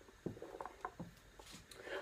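Faint, scattered knocks and rustles of a handheld microphone being handled.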